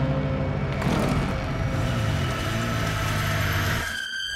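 A dark sustained music drone gives way, about a second in, to a rough engine-like mechanical noise whose pitch rises and falls.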